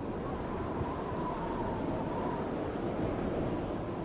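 Wind sound effect: a steady rush of cold winter wind, as if blowing in through an opened door, with a faint steady whistle in it during the first half.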